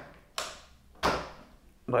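A power plug being pushed into its socket: two sharp knocks about two-thirds of a second apart.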